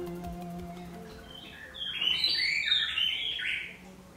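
Background music with held notes fades out over the first second or so. Then a bird sings a quick run of chirps for about two seconds, stopping just before the end.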